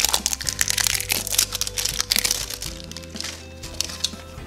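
Crinkling and crackling of the plastic wrapping being peeled off an LOL Surprise Glam Glitter doll ball. The crackles are dense for the first couple of seconds, then thin out, over background music with steady held notes.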